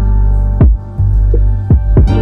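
Lo-fi hip hop beat: a deep, sustained bass with two kick drum hits about a second apart, and faint held notes above.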